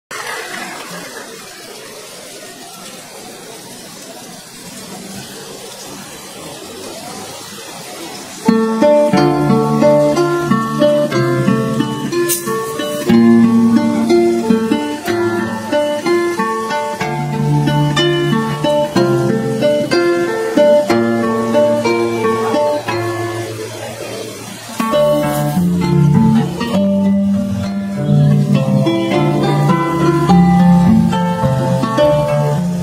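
Three harps playing an instrumental piece together, with fast plucked melody notes over a plucked bass line. The first several seconds are quiet and hazy, then the ensemble comes in loudly about eight seconds in, and it swells again near the end.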